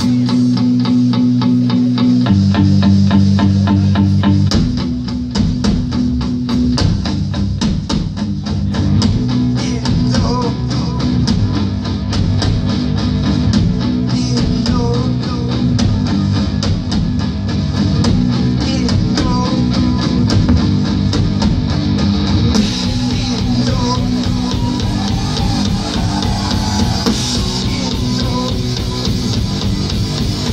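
A live rock band playing loudly, with electric guitar, bass and a drum kit keeping a steady beat over sustained low notes.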